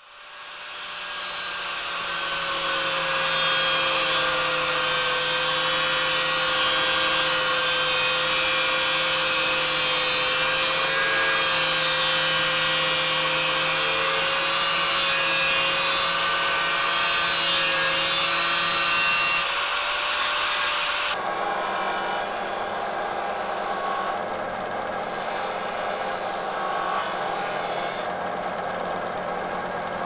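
Hand-held angle grinder with a cutting disc spinning up and cutting through the thin steel blade of a weed slasher: a steady whine over the hiss of the cut. About two-thirds of the way through it gives way to a quieter, lower machine sound.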